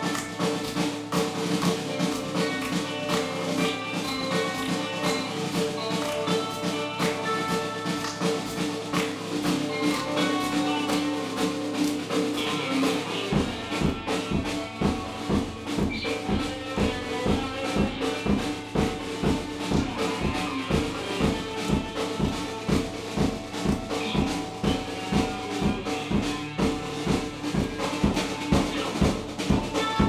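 Electric guitar and drum kit playing a song together, held guitar notes over drum hits. About 13 seconds in the bass drum comes in and drives a steady beat.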